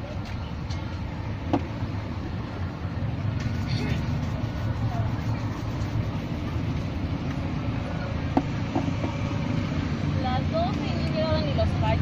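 Steady rumble of street traffic, with a shoe shiner's cloth and then a hand brush working over leather shoes. A couple of sharp taps, and indistinct voices near the end.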